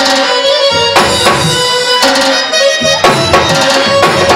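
Live Afghan attan dance music: an electronic keyboard playing the melody over tabla and drums in a steady dance rhythm. The deep drum strokes drop out for about a second twice, at the start and around the middle, then come back.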